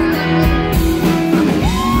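Live country band playing loudly, with guitar and drum kit; a long held note comes in near the end.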